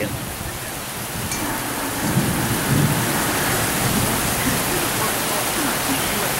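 Heavy rain pouring steadily onto a palm-thatched roof and a wooden dock, with a low rumble of thunder swelling about two seconds in.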